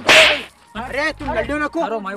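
A sudden, loud whip-like swish lasting about half a second at the very start. It is followed by boys' voices repeating the same short word over and over.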